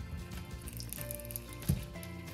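Background music with steady tones, and a single soft knock near the end as a steamed sausage is set down in an oiled nonstick frying pan.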